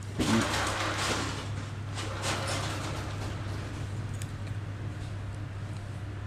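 A spinning fishing reel being handled and its handle turned, giving a soft rasping whir that is loudest in the first couple of seconds and then settles to quieter handling noise, over a steady low hum.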